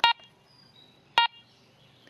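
Garrett ACE 200i metal detector beeping as it is switched on at the power button: two short beeps, the second about a second after the first.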